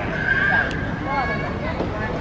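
Voices of people and children in a busy playground, with a long, high-pitched child's squeal near the start followed by shorter calls.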